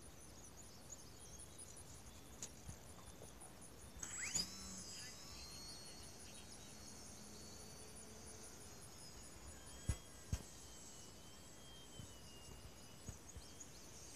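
Faint open-air ambience with insects keeping up a steady, evenly pulsing high trill. About four seconds in, a thin whine sweeps upward and holds at a high pitch, and two sharp clicks come near ten seconds.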